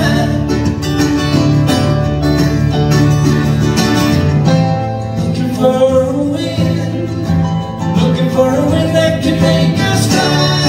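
Two acoustic guitars played together live, with a male voice singing over them.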